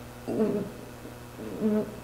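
A woman's soft, brief hesitation sounds between sentences, twice, over a steady low hum.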